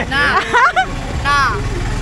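Voices exclaiming and chatting over a steady low rumble of road traffic, the rumble growing stronger about halfway through.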